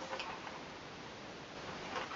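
Quiet room tone with a few faint ticks.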